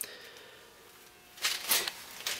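Quiet room tone, with a soft click at the start and a few brief rustling sounds about a second and a half in.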